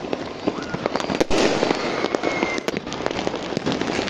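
Fireworks going off over a city, a rapid irregular string of pops and crackles with a few louder bangs.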